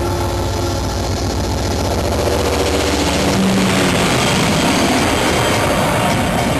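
Loud rumbling sound effect from a rock concert's arena sound system: a throbbing low drone, then a dense swell of noise from about three seconds in.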